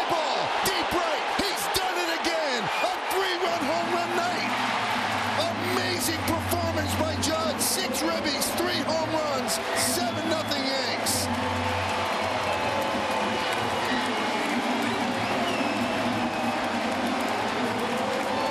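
Baseball stadium crowd cheering a home run, loud and sustained, with many voices shouting over it. Sharp claps stand out from about five to eleven seconds in, over a low bass line of stadium music.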